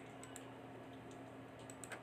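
Faint clicking of a computer mouse and keyboard, in two quick pairs, over a steady low electrical hum.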